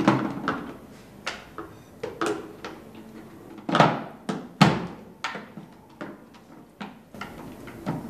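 Dishes and food containers being set down and handled on a glass-topped dining table: a series of knocks and clatters, the two loudest about four seconds in, half a second apart.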